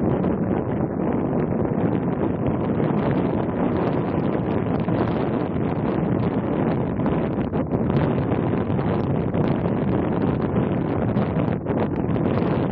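Wind buffeting the microphone: a steady, rough noise that wavers slightly in strength, over a choppy harbour.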